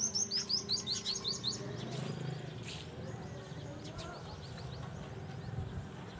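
A small bird chirping: a quick run of short, high, falling chirps, about six a second, for the first second and a half, then a few fainter chirps.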